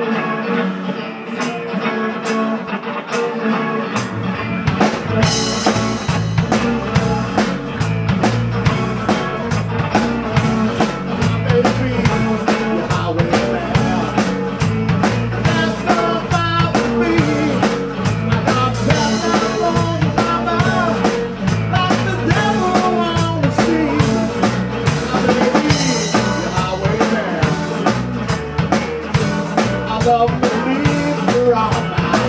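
Live blues-rock trio playing: electric guitar over electric bass and a drum kit. The guitar and cymbals start alone, and the bass and kick drum come in about four seconds in, after which the full band plays on.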